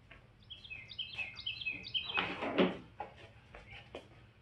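A small bird chirping a quick run of short high notes that step down in pitch, in the first half. A brief louder noise follows a little past two seconds in.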